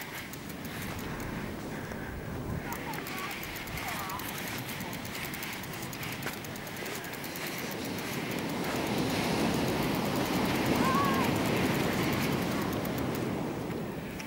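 Footsteps on loose black volcanic sand as a bicycle is walked across a beach, over a steady outdoor rush that grows louder in the second half.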